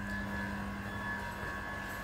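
Steady hum of running machinery, with a few held tones and no sudden events.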